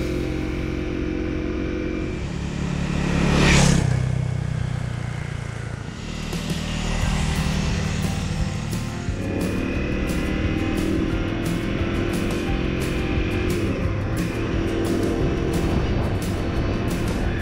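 Honda CRF250L's single-cylinder engine running on the road, swelling loudest about three and a half seconds in and then easing off, with music underneath.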